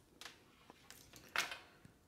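Faint handling noises from a headlamp and its charging cable being moved in the hands: a few soft rustles and small clicks, with one brief louder sound about one and a half seconds in.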